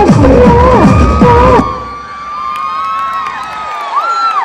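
Loud dance-music track cuts off about one and a half seconds in, followed by an audience cheering and shouting.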